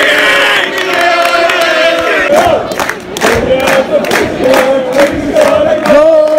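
A football crowd of fans chanting loudly together in unison. About two seconds in, a run of sharp rhythmic beats joins the chant at roughly three a second.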